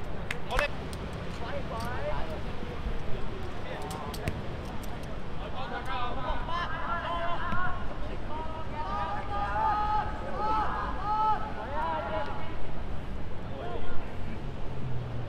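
Voices calling and shouting across a football pitch during play, several at once from about six seconds in, over a steady low rumble. A few sharp knocks stand out near the start and again about four seconds in, typical of a ball being kicked.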